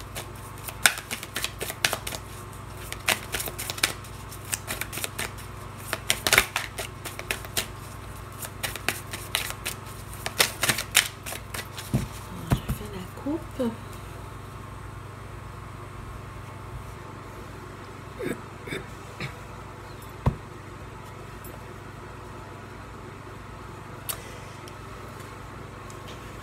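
A tarot deck being shuffled by hand: a quick run of crisp card clicks for about the first eleven seconds, then the shuffling stops and only a few soft sounds remain over a low steady hum.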